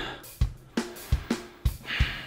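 Music with a drum kit playing a beat: a kick drum thumping about every half second under cymbals and hi-hat.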